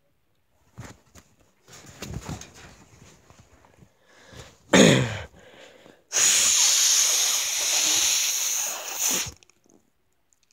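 A person's breath and mouth noises: faint breathing, a short loud vocal sound that falls in pitch about five seconds in, then a long loud hiss of breath lasting about three seconds that cuts off near the end.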